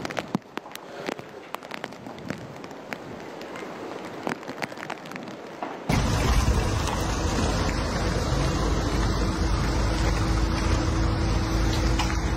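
Rain falling, with a steady patter and scattered sharp drips. About six seconds in, the sound cuts abruptly to a louder, steady rumbling noise heavy in the low end, and a faint steady hum joins it later.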